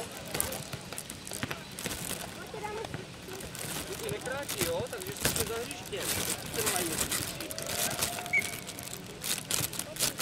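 Young players' and onlookers' voices calling out during a footnet (nohejbal) rally, with scattered sharp knocks of the ball being kicked and bouncing.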